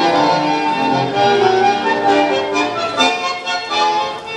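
Argentine tango orchestra music played through a PA loudspeaker, led by a bandoneon holding sustained squeezebox notes, with a run of short accented notes in the second half.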